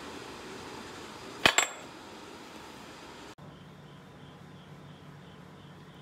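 A single sharp clink about a second and a half in, as a lump of melted cast iron is handled, over a steady background hiss. After a cut past halfway, a steady low hum takes over.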